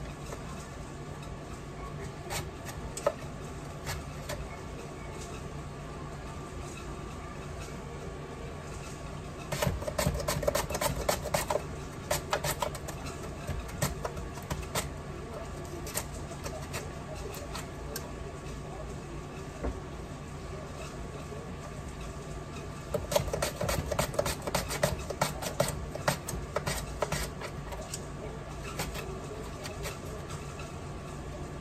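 Potatoes being slid by hand across the slicing blade of a metal box grater, cutting thin slices. There are two runs of quick, rapid strokes, about ten seconds in and again about twenty-three seconds in, with scattered single scrapes between them, over a steady low hum.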